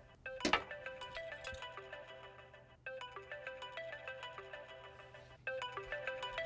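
Mobile phone ringing with a melodic ringtone, its short tune repeating about every two and a half seconds. A brief clatter sounds about half a second in.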